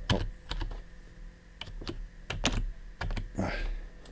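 Computer keyboard keys pressed in irregular, separate taps, a dozen or so clicks, as keyboard shortcuts for copying and pasting are tried.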